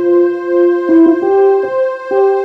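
Piano accompaniment playing a slow line of held notes, moving to a new note roughly every half second.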